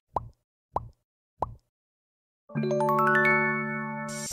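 Intro sound effect: three short rising bloops about six-tenths of a second apart, then a pause and a bright chord whose notes enter one after another and ring on.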